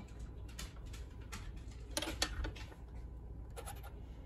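Pieces of rock-tumbled glass clicking and scraping against each other and a tabletop as they are picked up and set down: a scatter of light clicks, the loudest about two seconds in.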